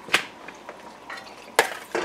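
A mixing bowl knocking against the rim of a metal pot twice, the second knock louder, as marinated beef and onions are tipped into the pot.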